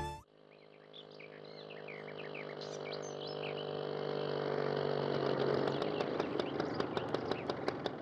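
Small birds chirping in short calls for the first few seconds, over a steady low hum that slowly grows louder; a run of quick ticks joins in the second half.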